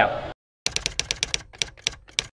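Typewriter keystroke sound effect: a quick, slightly uneven run of sharp clicks, about seven a second, starting about two-thirds of a second in.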